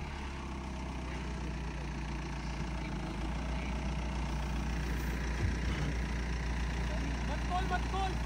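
Audi Q5 SUV's engine running at a steady idle on a steep dirt slope where it has just stalled partway up the climb.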